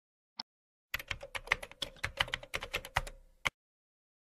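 Typing on a computer keyboard: a fast run of keystrokes lasting about two and a half seconds. A single click comes about half a second before the typing starts.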